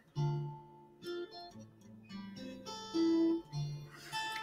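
Background music: acoustic guitar picking a slow melody of single notes, each ringing and fading before the next.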